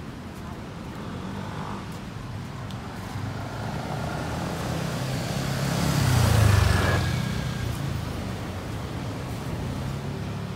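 A motor vehicle passing close by, its engine and tyre noise building to a peak about six and a half seconds in and then fading, over a steady background of road traffic.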